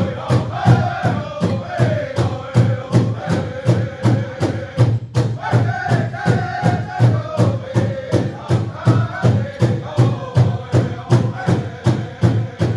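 Native American honor song sung by a group of singers over a steady drum beat of about three strikes a second. The voices break off briefly about five seconds in while the drum keeps going.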